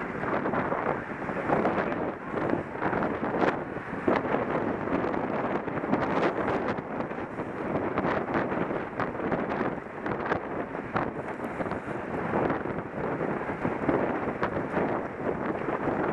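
Wind buffeting a helmet-mounted camera's microphone at race speed, a steady rushing noise broken by frequent short clicks and knocks.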